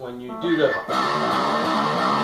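Electric guitar in Drop D tuning playing a riff, thickening into a dense, steady run of notes about a second in.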